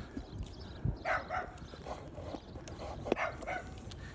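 A dog barking, a couple of short barks about a second in and another near the end, with wind rumbling on the microphone.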